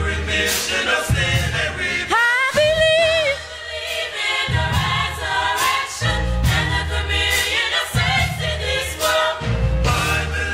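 A college gospel choir singing in full harmony, over a low bass pulse that drops out and returns. A little over two seconds in, one high note slides up and holds briefly above the choir.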